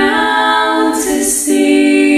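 Female voices singing a cappella in several-part harmony, choir style, holding sustained chords that move to a new chord about a second and a half in, with a brief sibilant consonant about a second in.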